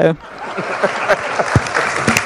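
Audience applauding. The clapping swells in about half a second in and holds steady.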